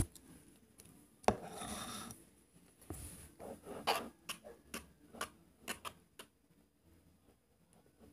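A mixing tool scraping and knocking against a plastic bowl while stirring thick, foamy fluffy slime made of glue, shaving cream and Tide: a knock about a second in and a short rub, then a run of irregular short scrapes that fade out near the end.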